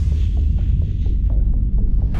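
Deep, loud rumbling drone of a logo intro sound effect, holding steady, with faint ticks about four times a second over it.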